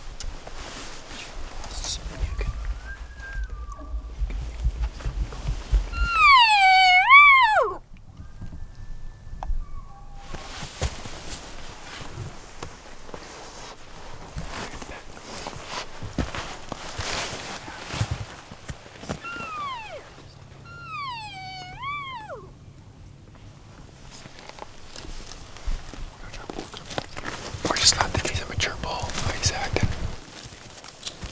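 Elk cow calling: two whining mews that dip, rise and then fall away, the first loud and close about six seconds in, the second quieter about thirteen seconds later. The calls are meant to hold a bull elk's interest.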